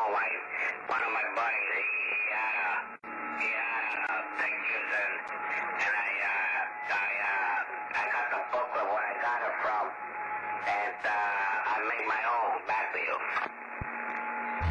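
A man talking over a CB radio received on lower sideband: a thin, narrow-band voice with a brief dropout about three seconds in and a faint steady whistle under it at times.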